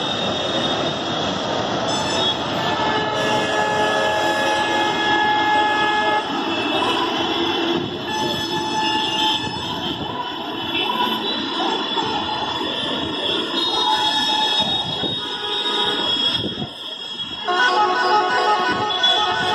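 Dense traffic din at a busy bus stand: a haze of engine and road noise under many vehicle horns sounding over one another, with held tones of different pitches starting and stopping every second or two.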